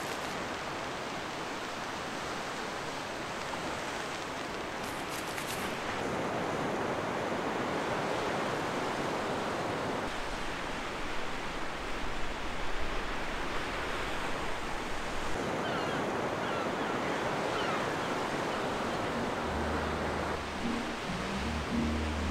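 Ocean surf, a steady wash of waves breaking and rolling in, with some wind. Low bass notes of music come in near the end.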